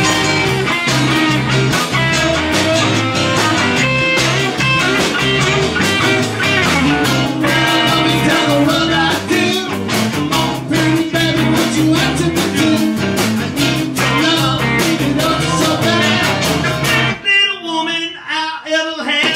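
Live amateur rock band playing loud: electric guitars, bass guitar and drum kit, with a man singing. The band stops about a second before the end, ending the song.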